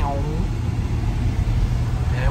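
Steady low rumble of a car's engine and tyres heard from inside the moving car, with a voice trailing off at the very start.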